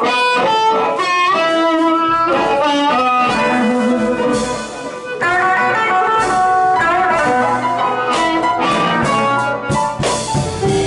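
Live blues band: electric guitar playing a run of quick notes over upright bass and drums, with the bass coming in about two seconds in.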